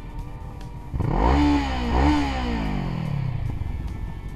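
A motorcycle engine revving close by as the bike rides off: the pitch climbs twice in quick succession, then falls away as it passes and fades.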